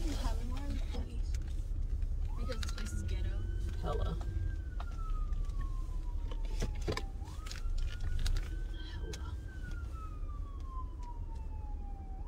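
Police siren wailing, heard from inside a car. About two seconds in the pitch jumps up quickly, then slides slowly down over about five seconds, and the cycle repeats once. A steady low rumble runs underneath.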